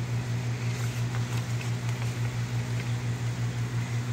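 A steady low machine hum, pulsing slightly a few times a second, with faint paper rustles and ticks as a picture-book page is handled and turned.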